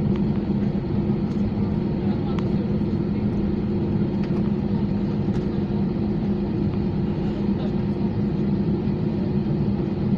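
Steady cabin hum of an Airbus A320-232 taxiing, its IAE V2500 turbofans at low taxi power, heard from inside the passenger cabin, with a few faint ticks.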